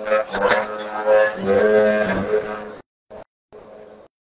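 A man's voice chanting Quran recitation in melodic tajweed style, amplified through a microphone, with long held notes and ornamented turns in pitch. The phrase ends abruptly about three seconds in.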